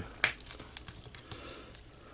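Small plastic action figure being handled and posed: a sharp click about a quarter second in, then a few faint clicks and taps.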